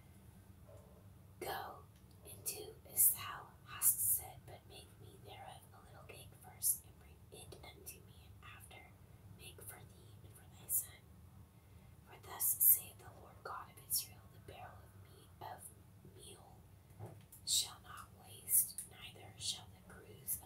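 Close-miked whispered reading aloud: a voice whispering phrase by phrase with crisp hissing s sounds and short pauses, over a faint steady low hum.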